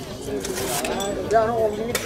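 People talking among a gathered crowd, with a sharp click near the end.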